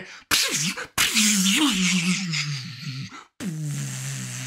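A man's mouth sound effects imitating a vehicle kicking in a nitrous boost. Short hissing bursts lead into a long hissing, engine-like drone that falls in pitch, followed by a second, lower and steadier drone.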